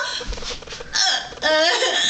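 A woman crying: short hiccuping sobs, then a drawn-out wailing cry that starts past the halfway mark, its pitch wavering up and down.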